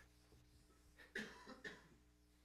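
A man coughing: two short coughs about half a second apart, starting a little over a second in.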